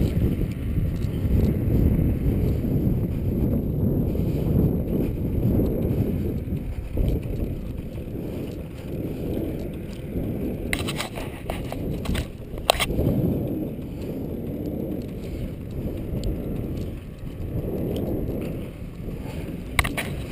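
Wind buffeting the camera microphone: a rough, fluctuating low rumble, with a few sharp knocks a little past the middle.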